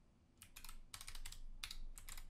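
Computer keyboard being typed, a quick run of about eight keystrokes starting about half a second in: a password being entered at a sudo prompt.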